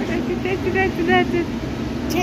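Background chatter of high-pitched, child-like voices, with a few short calls in the middle, over a steady low hum.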